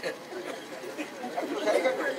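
Voices talking over one another, growing louder in the second half.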